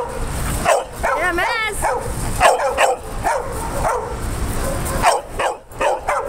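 A dog whining, with a wavering high-pitched cry about a second in, then a string of short yips and barks roughly every half second.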